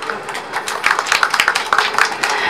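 Audience applauding, a dense patter of many hands clapping that picks up about half a second in.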